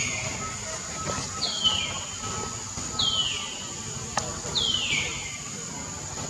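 A high, falling call, repeated four times about every second and a half, over a steady high-pitched background hiss.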